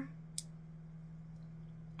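A single sharp click about half a second in, as the rainbow wax warmer is switched on and its lights come on; otherwise quiet room tone with a steady low hum.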